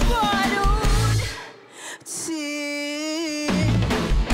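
Live emo-rock band (drums, bass, guitars, keys) playing under a female lead singer. About a second and a half in, the band drops out briefly and a single held sung note sounds on its own, then the full band with drums comes back in near the end.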